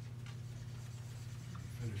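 Dry-erase marker writing on a whiteboard: faint scratchy strokes over a steady low hum.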